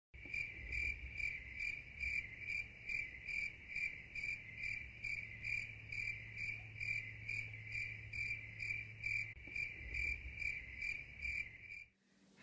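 A cricket chirping steadily and evenly, about two to three clear, high chirps a second.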